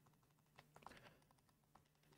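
Near silence with a few faint, short button clicks about half a second to a second in, as a URL is typed on the on-screen keyboard.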